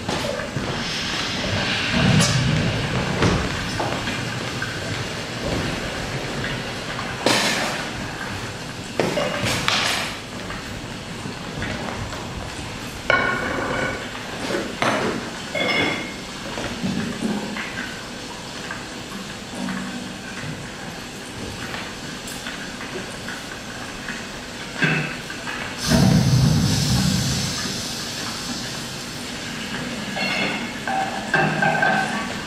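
Theatre sound-effects playback during a scene change: a steady rumbling noise with irregular clanks and knocks, swelling louder about two seconds in and again near the end.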